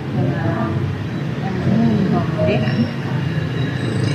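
A woman's voice talking in conversation, over a steady low background rumble.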